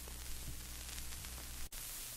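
Steady hiss and low hum from an old recording in the quiet between songs, cut by a brief dropout near the end.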